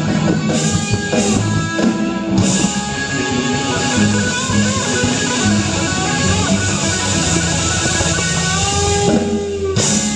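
Live rock band playing loudly: electric guitars sounding long held notes that bend in pitch.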